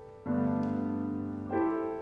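Grand piano playing slow, sustained chords: two chords struck a little over a second apart, each ringing on and fading before the next.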